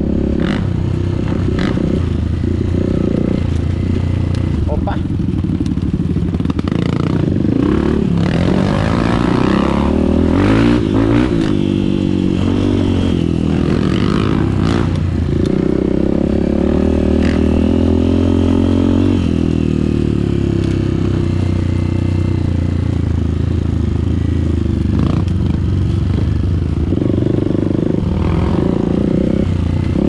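Dirt bike engine running under way, the revs rising and falling with the throttle, with clatter from the bike over rough trail ground.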